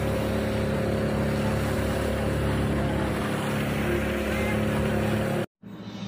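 Steady engine drone, most plausibly a fire engine running its pump to supply the hoses, over a broad rushing noise from the tanker fire and the water spray. It cuts off suddenly near the end.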